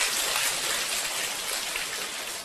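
Seated audience laughing and clapping in response to a joke, a dense crowd noise that swells and then fades out near the end.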